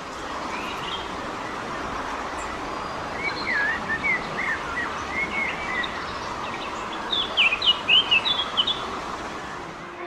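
Small birds chirping in quick strings of short rising and falling notes, a bout a few seconds in and a louder one near the end, over a steady rushing hiss of outdoor ambience.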